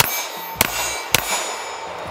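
Three shots from a 9mm Walther Q5 Match pistol, about half a second apart, the first the loudest, with steel targets ringing on through the shots.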